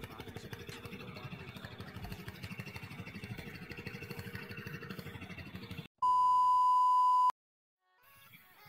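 A low, steady, rapidly pulsing drone, cut off about six seconds in by a loud, steady electronic beep tone lasting just over a second, then dead silence.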